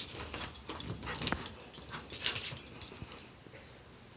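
A dog and a kitten scuffling in play on a hardwood floor: a run of quick clicks and scrapes from paws and claws, with short sounds from the dog, dying away about three and a half seconds in.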